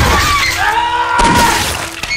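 Loud crashing and shattering of a violent struggle, over a long held yell, with a sharp impact about a second and a quarter in.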